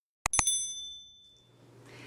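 Subscribe-animation sound effect: two quick mouse clicks followed by a bright bell ding that rings and fades away within about a second.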